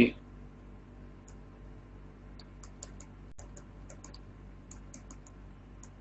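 Faint, irregular small clicks from a computer input device, a few a second, as characters are handwritten on screen, over a low steady hum.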